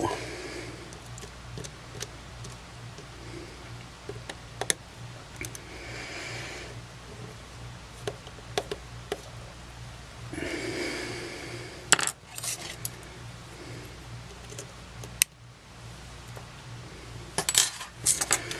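Small clicks and taps of a compact camera and small hand tools being handled and set down on a stainless-steel work surface, with two brief scraping rustles about six and eleven seconds in and a sharper click about twelve seconds in. A faint steady hum lies underneath.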